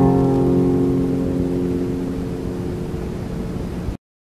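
Steel-string acoustic guitar's final strummed chord ringing out and slowly dying away, until the sound cuts off abruptly near the end.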